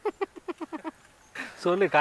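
A person laughing in a quick run of short voiced bursts, about nine in the first second, then breaking off.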